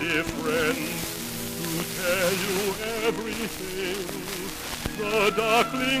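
Classical art song: a trained singer with wide vibrato holds slow, sustained notes over a quieter sustained accompaniment. The voice climbs and grows louder near the end.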